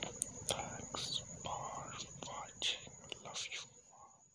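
A person whispering close to the microphone in short breathy phrases, with a faint steady high-pitched whine underneath.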